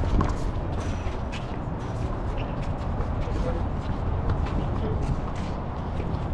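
Steady low rumble of wind on the microphone, with scattered light taps and scuffs from shoes and the ball on an outdoor handball court, the loudest just after the start.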